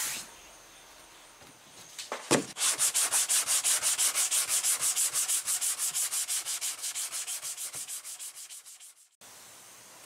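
Hand sanding block with 150-grit paper rubbed back and forth over cured polyester glaze on a car body panel, knocking down the filled dings. The strokes are fast and even, about five a second, fade near the end and cut off suddenly. A single knock comes about two seconds in, just before the strokes start.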